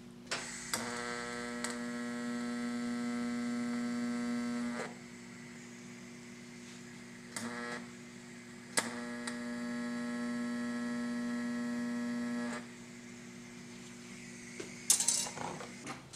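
TIG welding arc buzzing steadily in two separate welds of about four seconds each, each starting with a sharp click. Near the end, a brief clatter of small metal pieces.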